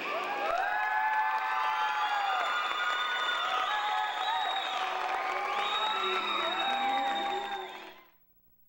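Audience cheering with many high-pitched whoops and screams over applause as the music stops; the sound cuts off suddenly at the end.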